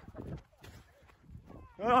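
Faint low thumps and rustle from a handheld phone carried by someone running on grass, then a loud drawn-out "Oh!" exclamation near the end that rises and then falls in pitch.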